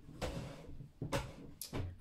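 Tarot cards being handled on a wooden table: a brief soft rustle, then two sharp taps about half a second apart.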